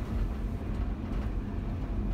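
Tour bus driving along a town street, heard from its upper deck: a steady low rumble of engine and road noise.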